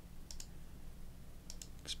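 Computer mouse clicking: a quick pair of clicks, then a few more near the end, faint over a steady low hum.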